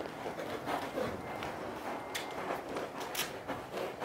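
Faint scuffing of a horse's hooves stepping in soft arena sand, with a few light clicks from the saddle and tack.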